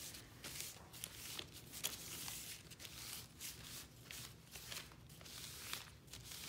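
Faint, irregular rustling and scrubbing of a wadded paper towel rubbed and dabbed over wet, walnut-stained parchment paper, blotting up the stain.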